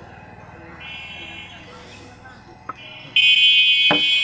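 A high-pitched, steady electric buzzing tone: a short faint one about a second in, then a loud one starting about three seconds in. A sharp knock near the end as a glass of tea is set down on the wooden table.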